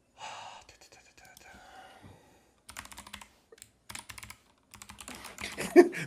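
Computer keyboard typing in short bursts of keystrokes, mostly in the second half.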